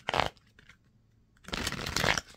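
A deck of tarot cards being shuffled in the hands: a short burst of card noise at the start and a longer one in the second half.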